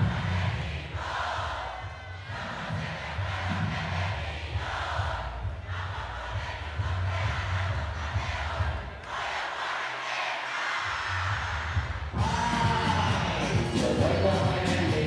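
Live concert sound: a packed crowd cheering and shouting over a dembow beat with heavy pulsing bass. The bass cuts out for about a second near ten seconds in, then the music comes back louder with a voice singing over it.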